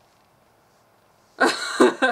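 Near silence for over a second, then a woman's short, loud, breathy vocal burst in two quick pulses near the end.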